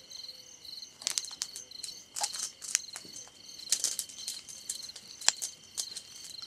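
Crickets chirping steadily in a fast pulsing trill, with a handful of sharp clicks and crackles over it, the first about a second in and the loudest near the end.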